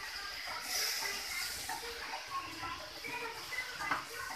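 Straw mushrooms sizzling as they stir-fry in an aluminium wok on a gas stove: a steady, faint high hiss.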